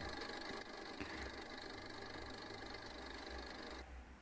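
Faint steady background hum with a low rumble, cutting out just before the end.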